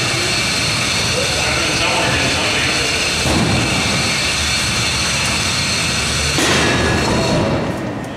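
Combat robots' spinning weapons and drive motors giving a steady high whine, with a louder, brighter surge about six and a half seconds in.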